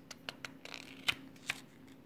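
Paper pages in a ring binder being handled: a few light rustles and clicks, the sharpest about a second in.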